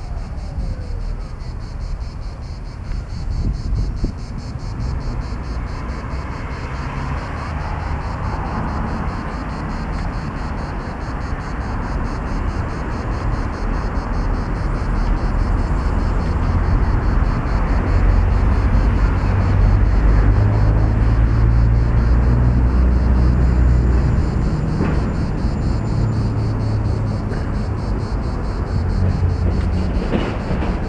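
Outdoor ambience: a steady low rumble with a hiss above it, swelling over the middle and easing near the end.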